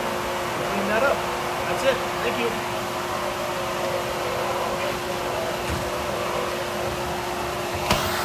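Workshop dust collector running, pulling air through a flexible dust collection hose used as a hand vacuum: a steady rush of air with a constant hum.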